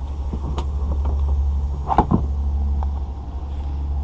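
Steady low rumble, with a few light knocks about half a second and two seconds in as hands handle the plastic kayak.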